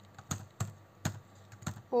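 Computer keyboard keystrokes: about half a dozen separate key presses at an uneven, unhurried pace as a line of code is typed.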